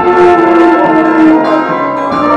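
Church bells ringing, mixed with a brass band holding sustained notes.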